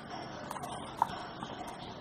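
A plastic ruler being shifted and set down on drawing paper, with a few light clicks, the sharpest about a second in.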